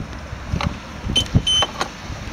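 Plastic clicks and knocks from the flap of the Piaggio MP3 scooter's filler compartment being handled. About a second in come two short high-pitched electronic beeps from the scooter, the second slightly longer.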